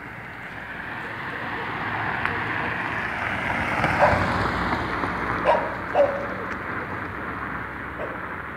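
A dog barking three times, about four, five and a half and six seconds in, over a rush of noise that swells and fades.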